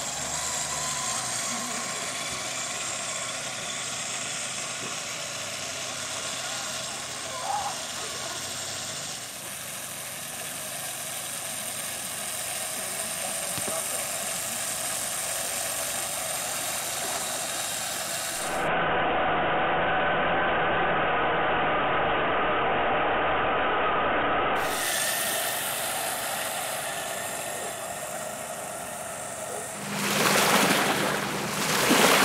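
1:14 scale radio-controlled Tatra 130 model truck driving, its drive giving a steady mechanical whine. About two-thirds of the way through it turns louder for some six seconds.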